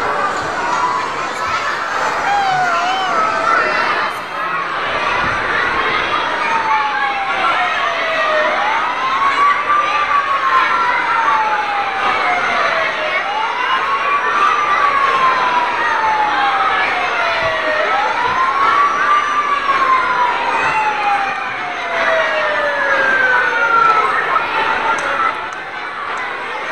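A siren wailing in slow cycles, each a quick rise and then a long falling tone, four or so times in a row. It sounds over the constant chatter and cheering of a crowd of children and adults in a hall.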